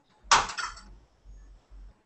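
A sudden clatter of kitchenware about a third of a second in, dying away within half a second, followed by faint handling sounds.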